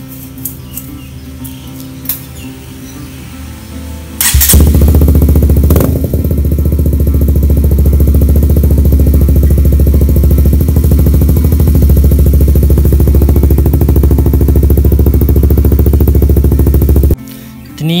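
Honda CBR150's single-cylinder four-stroke engine idling through a homemade slit-open muffler with its baffle chamber removed and fiberglass packing added. The loud, steady exhaust note comes in suddenly about four seconds in and cuts off abruptly about a second before the end.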